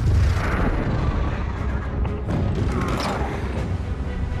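Dramatic film score with a deep booming rumble and two whooshing sweeps. A run of sharp clicks comes about two seconds in.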